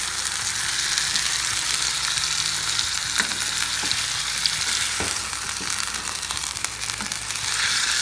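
Chicken pieces sizzling in a saucepan with onion and olive oil, a steady hiss, while being stirred with a spatula that scrapes and taps lightly against the pan a few times.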